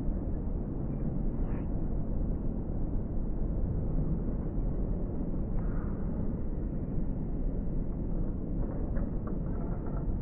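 Steady low rumbling background noise, with a few faint higher sounds about six seconds in and again near the end.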